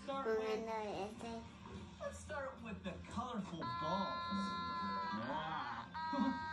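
Voices for the first half, then a steady high held tone with several overtones, lasting about a second and a half and sagging slightly in pitch.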